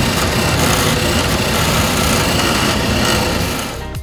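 Ultimaker Extended+ 3D printer running a print: its stepper motors whir in a fast, shifting pattern as the print head travels. The sound is steady and fades slightly near the end.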